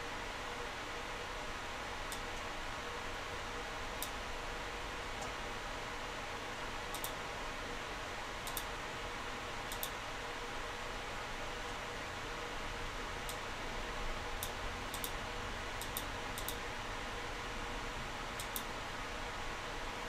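Computer mouse clicking now and then, a dozen or so short sharp clicks at irregular intervals, as surfaces are picked one by one. Under it is a steady hiss of room tone.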